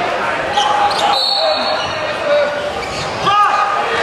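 Voices of onlookers talking and calling out in a large, echoing gymnasium during a wrestling bout, with a few sharp thumps.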